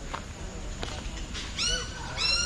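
An animal call begins near the end: a sharp rising onset that settles into a held, nasal-sounding note. It is the first of a series of calls. Two faint clicks come before it.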